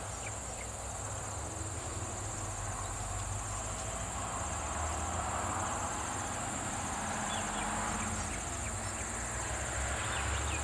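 Insects chirring steadily in a continuous high trill, over a low steady rumble.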